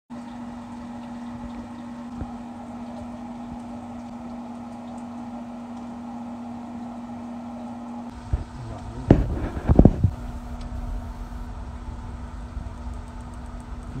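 A steady mechanical hum with one constant low tone. About nine seconds in, a few loud knocks and handling bumps break through it, and a lower rumble follows.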